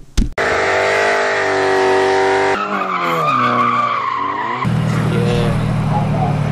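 A sharp knock, then car sounds: a held squealing tone of spinning tyres for about two seconds, then engine pitch falling and rising, then a loud steady low engine drone from about two-thirds of the way in.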